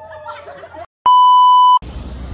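A single loud electronic beep, a steady tone of about 1 kHz lasting under a second, starting and cutting off abruptly about a second in. Before it, faint voices fade out.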